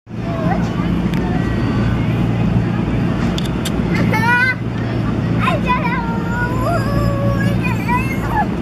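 Steady low hum of an inflatable bounce house's air blower running, with children's high-pitched calls and shouts over it about four seconds in and again in the second half.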